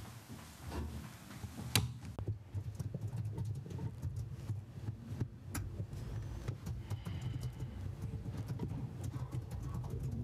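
Handling noise on a lectern microphone: a sharp click about two seconds in, then a steady low rumble with scattered small clicks and taps.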